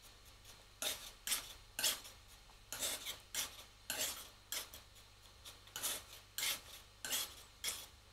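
Metal palette knife scraping and mixing oil paint on a palette, working red paint with a little white into a lighter tone: a run of short rasping scrapes, about two a second.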